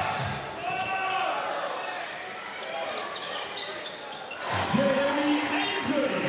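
Basketball being dribbled on a hardwood court during live play, short sharp bounces over the noise of a large indoor arena. A man's voice comes in near the end.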